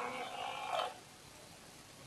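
Small electric water pump on a floating platform in a barrel gurgling for about a second as it gulps air along with the water, then the sound falls away to a low background.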